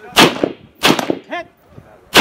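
Two shots from an AR-15-style rifle, about two-thirds of a second apart, each a sharp crack with a short echo.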